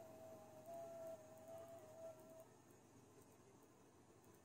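Faint FT8 digital-mode signal from a ham radio receiver on 20 metres: a single thin tone hopping between closely spaced pitches, which stops about two and a half seconds in at the end of the 15-second FT8 transmit period, leaving faint hiss.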